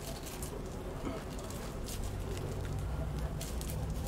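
Faint rustling and ticking of a rolling paper being rolled and pressed between the fingers, over a steady low background hum.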